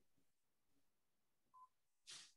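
Near silence: room tone, with one short, faint electronic beep about a second and a half in.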